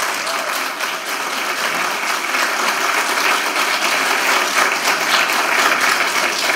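Audience applauding in a meeting room.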